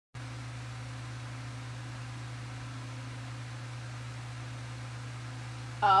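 Electric pedestal fan running: a steady hiss with a low hum underneath. A woman's voice says "oh" at the very end.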